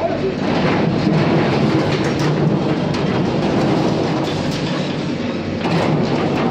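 JCB backhoe loader demolishing a corrugated sheet-metal shop wall: the diesel engine hums steadily under a dense, continuous rattling, scraping and clanking of metal sheets as the bucket pushes them over.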